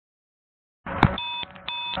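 Police body camera: total silence, then the audio cuts in about a second in with a sharp click and two short electronic beeps, the camera's double beep as recording starts. The silence is the pre-event buffer, which holds picture but no sound.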